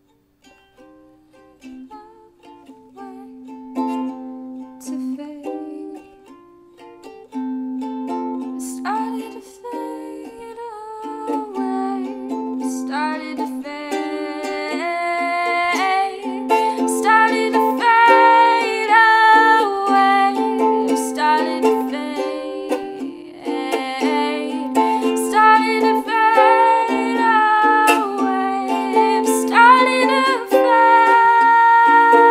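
Acoustic ukulele playing a passage of plucked notes, starting soft and building steadily louder.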